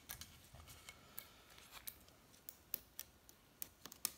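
Faint, scattered small clicks and crackles of a gasket being peeled off a Turbo 400 transmission's front pump by gloved hands.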